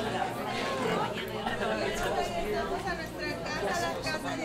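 Overlapping chatter of several people talking at once, no single voice clear.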